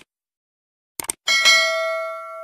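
A quick mouse-click sound effect about a second in, then a single bell ding that rings on and fades slowly: the click-and-notification-bell effect of a subscribe-button animation.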